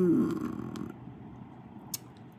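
A woman's low, thoughtful 'hmm', falling in pitch and trailing off into a breathy murmur within the first second. Then quiet room tone, with a single short click near the end.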